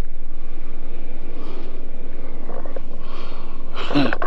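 Steady low rumble of wind buffeting the microphone, with a faint hiss above it.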